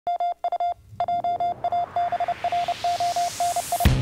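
Electronic intro sting: short and long beeps on one steady pitch in an uneven, telegraph-like rhythm, over a whooshing noise that rises in pitch. Near the end it breaks into loud theme music.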